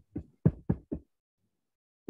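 Four quick knocks in the first second, the second one the loudest, heard over a video call's microphone.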